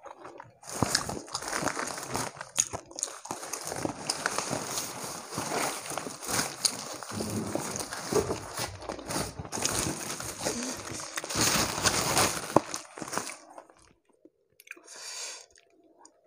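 Close-miked crunching and chewing of crispy deep-fried catfish (lele krispy), the hard battered crust cracking with each bite and chew. It stops about two and a half seconds before the end.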